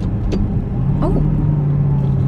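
Aston Martin DBX's twin-turbo V8 heard from inside the cabin, its note changing about a second in to a louder, steady drone as a pulled control switches the drive mode.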